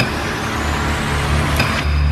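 Film sound design under a crucifixion scene: a loud hissing swell with a slowly rising tone, a sharp strike about one and a half seconds in, and a low droning rumble that comes in after half a second.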